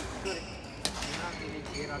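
Badminton rally in an indoor hall: two sharp racket hits on the shuttlecock, under a second apart, with short squeaks of shoes on the court floor, over background chatter.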